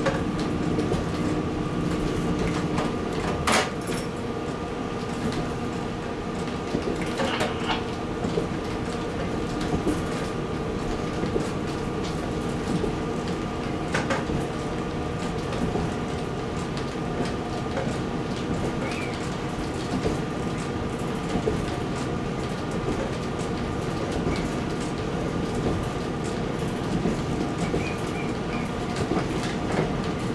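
KiHa 40 series diesel railcar running along the track, heard from inside the driver's cab: a steady engine drone with several even tones, and a few sharp clicks from the wheels on the rails.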